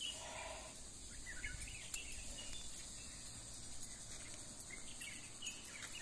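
Quiet outdoor ambience: a steady high drone of insects with short bird chirps scattered through it, over a low rumble.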